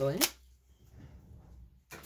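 A woman's voice ends a word, then faint handling noise and one sharp click just before the end.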